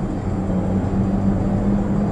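Steady in-cabin drone of a 2020 Chevrolet Equinox's 2.0-litre turbocharged four-cylinder engine under way, with road and tyre rumble, holding one even note.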